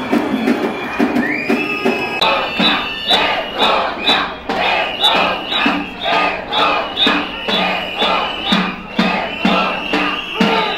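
A crowd of protesters chanting a slogan in rhythm, about two shouts a second, with hands clapping along. A steady high tone is held over the chant from about a second in.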